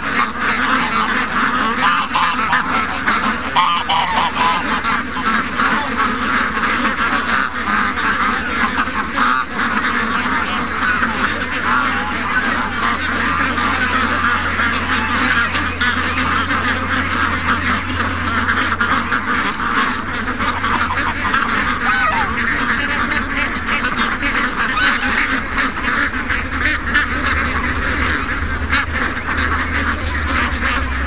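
A large flock of domestic ducks, mostly white Pekins, with geese among them, quacking and honking all at once in a loud, dense, unbroken chorus.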